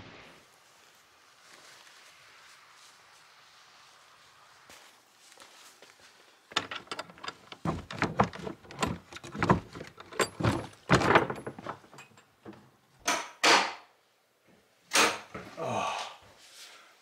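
A stiff wooden door being worked open: its handle and latch rattle and the door is knocked and pushed in a run of clatters, then takes two heavier thuds as it is nudged open with a foot. Before that, only a faint, even outdoor hiss.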